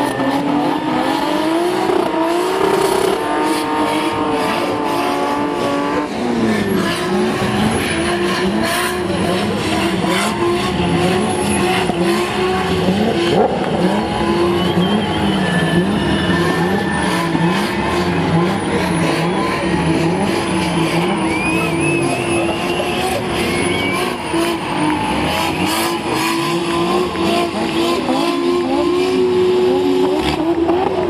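Drift car engine at high revs while the car spins donuts with its rear tyres screeching and smoking. The revs are held high at first, then rise and fall about once a second through the middle, then are held high again.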